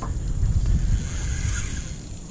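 Wind rumbling on the microphone: a steady low buffeting with no distinct clicks.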